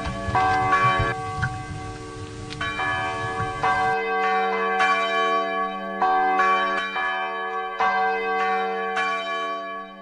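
Church bells ringing, struck about once a second, each stroke ringing on into the next. A rougher low sound lies under the bells for the first four seconds.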